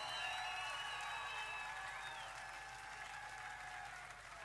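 Large open-air festival crowd applauding and cheering at the end of a rock set, with a few voices or whistles carrying above the clapping; it slowly fades.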